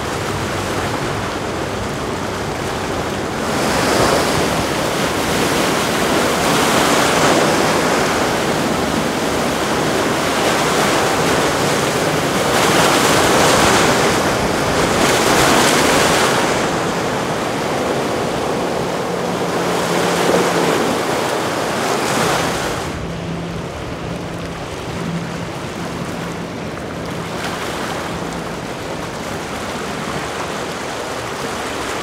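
Motor yachts running past at speed: the rush of their bow spray and churning wake swells and fades several times as the boats go by, with wind on the microphone. A faint low engine hum sits under the water noise in the later part.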